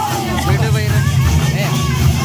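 Many voices of a dancing crowd talking and calling out over one another, with loud, blurred low drum beats from a barrel drum underneath.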